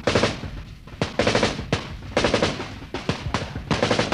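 Bursts of automatic gunfire: several short rattling volleys, about one a second.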